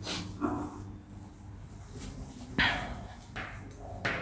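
Whiteboard duster wiped across the board in short strokes, the loudest sweep about two and a half seconds in. A brief pitched sound comes about half a second in.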